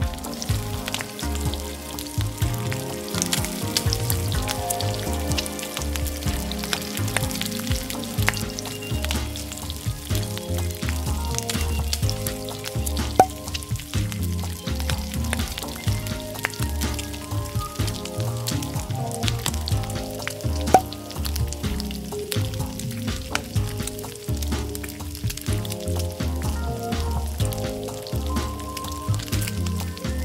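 Beaten egg with chopped vegetables sizzling in a hot nonstick frying pan as a rolled omelette cooks, with a fine steady crackle throughout. Background music with a steady beat plays underneath.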